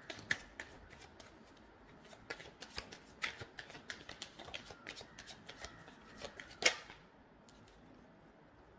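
A deck of tarot cards being shuffled by hand: a quick run of card clicks and snaps, with one loud snap near the end before the shuffling stops.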